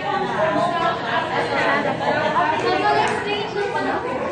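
Several people talking at once in a room: overlapping chatter with no single clear speaker.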